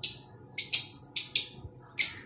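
A lovebird giving about six short, shrill chirps in two seconds, some in quick pairs.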